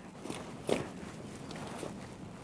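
Quiet, soft rustling and shuffling as a wet dog and a person shift about close together on clothing and groundsheet, with a slightly louder brush a little under a second in.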